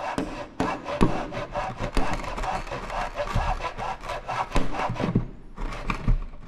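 Wood being worked by hand with a saw and chisel: dense scraping strokes with irregular sharp knocks, easing briefly near the end.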